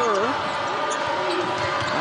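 A basketball being dribbled on a hardwood court, heard over the steady murmur of an arena crowd, with a few short sharp sounds from play on the floor.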